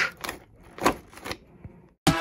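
Small plastic water bottles in a shrink-wrapped case being handled by hand: a few short, light crinkles and clicks of plastic, the loudest about a second in.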